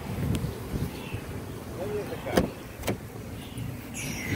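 A 2012 Chrysler 300's door being opened: a light click near the start, then two sharp clicks about half a second apart past the middle, over low rumbling handling noise.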